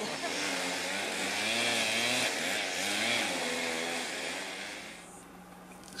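A motor vehicle's engine running with a wavering pitch over a steady hiss, fading out about five seconds in.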